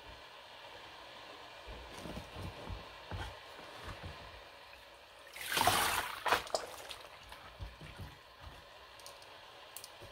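Plastic mesh trays of raw wool locks being lowered into a tub of hot soapy water: faint clicks and knocks of the plastic, then a brief rush of water a little over halfway through as the trays go under.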